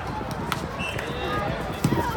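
Volleyball players and spectators calling out and chattering during a rally on an outdoor hard court, with footsteps and two sharp smacks, about half a second in and near the end.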